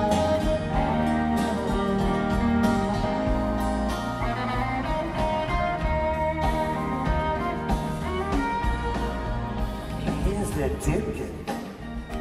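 Live band playing an instrumental passage with guitar, held sustained notes over a steady bass line, between lines of the vocal.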